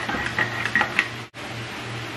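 A metal spoon stirring and clinking against the sides of a cup: a few light clinks in the first second, cut off abruptly. A low steady hum runs underneath.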